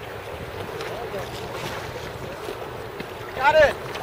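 Steady rush of fast river current with wind on the microphone. Near the end there is one brief shout.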